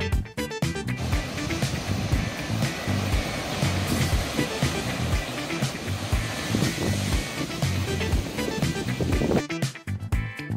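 Sea surge rushing and breaking into a rocky limestone cove at a blowhole, a steady noisy roar of surf that comes in about a second in and drops away near the end. Background music with a steady beat runs underneath.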